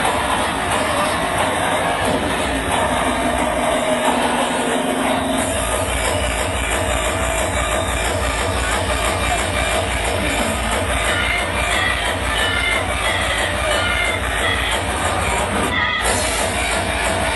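Hard electronic dance music (hardcore techno) playing loud over a club sound system. About two seconds in, the kick drum drops out for a short breakdown with a held tone, then a fast, steady kick drum comes back in about five and a half seconds in.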